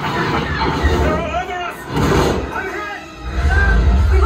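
Theme-park ride's simulated space-battle soundtrack: music over deep rumbling that swells twice, with a blast about two seconds in, as the shuttle comes under attack.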